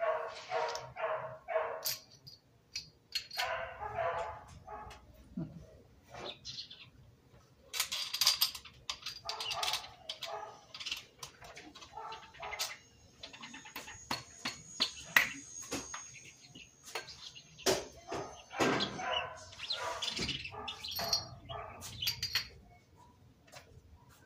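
Scattered metal clinks and knocks as the parts of a stripped four-cylinder engine block are handled, with a mallet tapped on the crankshaft, over short animal calls in the background.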